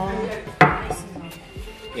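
A ceramic mug set down on a wooden table: one sharp clunk about half a second in, with a brief ring.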